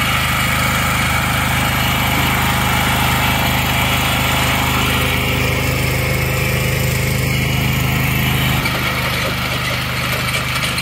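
Riding lawn mower's small engine idling steadily, its tone shifting slightly near the end.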